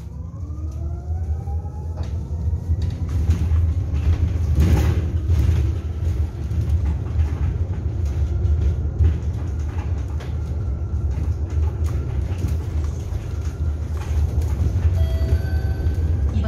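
Interior of a low-floor electric city bus under way: the electric drive motor's whine rises in pitch as the bus accelerates and then levels off at cruising speed, over a steady low road rumble. There is a single knock about five seconds in, and a brief electronic chime near the end as the next-stop announcement comes up.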